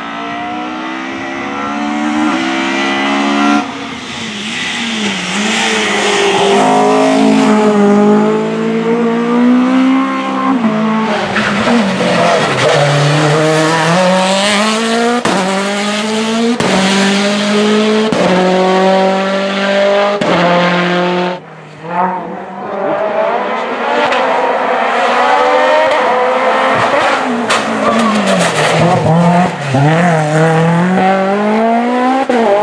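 Racing car engines at full throttle, accelerating hard as each car passes one after another. The pitch climbs and drops again and again through a run of gear changes, with a brief sudden drop about two-thirds of the way through.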